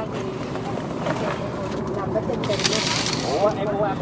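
Background voices of several people talking inside a sleeper bus. A short burst of hiss comes about two and a half seconds in.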